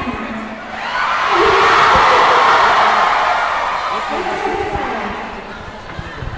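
A large crowd cheering: the cheer swells up about a second in, holds loudest for a couple of seconds, then dies away.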